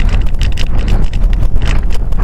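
Airflow buffeting the onboard camera's microphone on an RC glider in flight: a loud, steady rushing rumble, with a run of short, high ticks in the second half.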